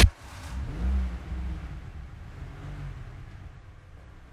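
A car door slams shut, then a small car's engine runs as it pulls away, a low rumble that swells about a second in and then settles, in the echo of an underground parking garage.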